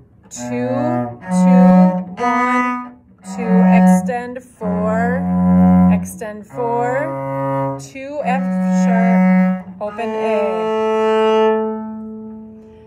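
Cello played with the bow: a slow beginner's passage of about nine low, held notes, each around a second long, fingered in the extended position. The last note is held and dies away near the end.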